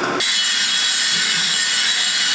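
Steady high-pitched hiss from an iron-melting furnace as molten iron is ladled, cutting in abruptly a moment in.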